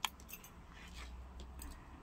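A metal ladle clinking lightly against a stainless steel pot: one sharp click at the start, then a few faint taps, over a low steady hum.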